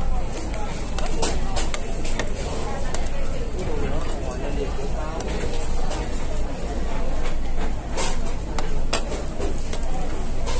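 Restaurant background: steady chatter of other diners over a low hum, with several sharp clinks of a metal fork and spoon against a ceramic plate.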